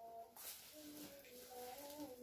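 Near silence, with faint drawn-out tones in the background and a brief soft rustle about half a second in.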